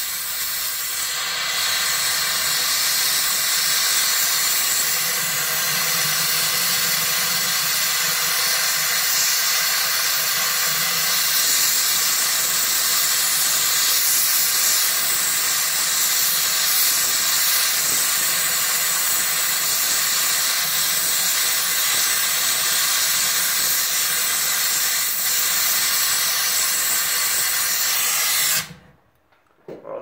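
Gas torch flame hissing steadily as it heats a platinum blob to sweat its rough back surface. The hiss cuts off suddenly near the end as the torch is shut off.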